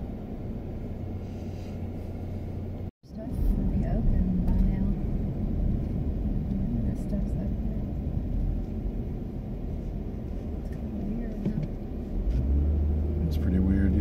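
Car cabin road and engine rumble while driving slowly through town streets, a steady low drone. The sound cuts out briefly about three seconds in, then resumes a little louder.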